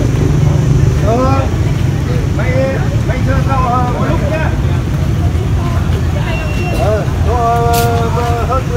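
Outdoor ambience: a steady low rumble with other people's voices talking in the background in several short phrases, one of them a held call near the end.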